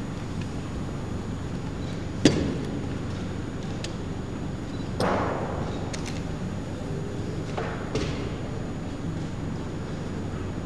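Sharp wooden knocks of chess pieces being set down on the board and the chess clock's buttons being hit during a blitz game: a few separate knocks, the loudest about two seconds in, over steady room noise with a low hum.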